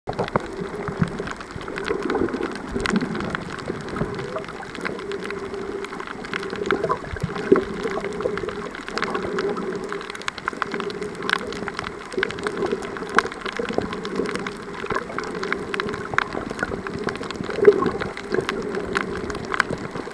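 Underwater sound: a muffled, steady water noise with a constant scatter of sharp clicks and crackles.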